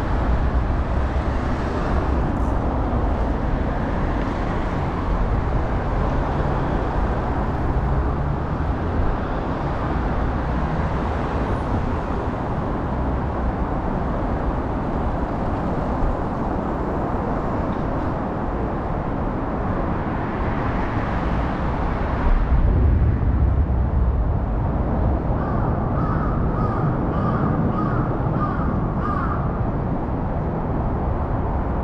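Steady city road traffic noise, with a louder low rumble swelling briefly about two-thirds of the way through. Near the end, a crow caws in a quick run of about eight to nine calls, roughly two a second.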